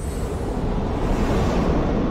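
Cinematic logo sound effect: a loud, deep rumbling roar with music, the tail of a sudden hit, beginning to fade near the end.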